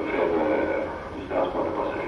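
A man's voice speaking on the soundtrack of archive footage, played through the exhibit's speakers. The visitor wonders whether it is Joseph-Armand Bombardier himself speaking.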